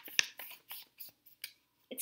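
A sheet of paper being folded and creased by hand: a quick run of short crackles and rustles that stops shortly before the end.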